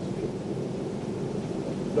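Steady low background noise with no distinct events, a pause between spoken phrases.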